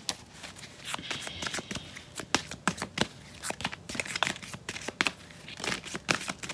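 Rider-Waite tarot deck being shuffled by hand: a rapid, irregular run of short card clicks and slaps.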